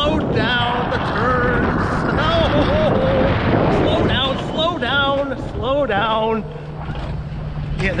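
Alpine coaster sled running fast down its steel rail track: wind rushing over the microphone and the rumble of the sled on the rails, with the rider's wavering, wordless exclamations over it.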